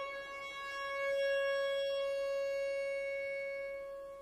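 Bayan (Russian chromatic button accordion) sustaining one long held note, its reedy tone swelling about a second in and then slowly fading away near the end as the bellows pressure eases.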